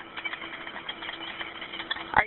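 Background noise on a recorded 911 phone call, heard through the narrow telephone line: a rapid, irregular crackle of clicks over a faint steady hum.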